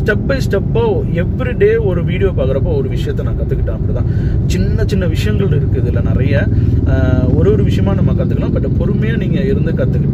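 A man talking inside a moving car, over the steady low rumble of road and engine noise in the cabin.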